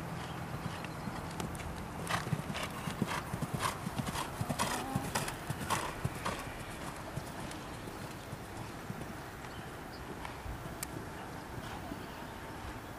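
Horse hooves cantering on an arena's sand footing close by. A quick run of hoofbeats is loudest between about two and six seconds in, then fades.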